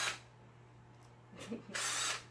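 Cordless drill with a hole-saw bit spun briefly with no load, two short bursts: one right at the start and one near the end.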